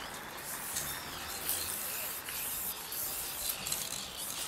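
Aerosol spray-paint cans hissing in repeated short bursts as paint is sprayed onto a wall.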